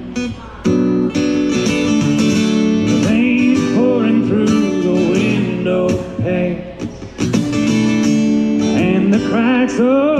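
Acoustic guitar strumming chords in a solo live performance, with brief gaps just after the start and around the seventh second. A man's voice sings wordless, wavering notes in places, around the middle and again near the end.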